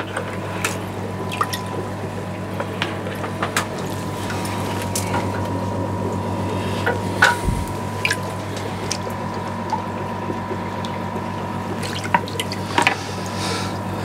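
Aquarium water dripping and trickling, a tank on a continuous auto water change system, with scattered drips over a steady low hum.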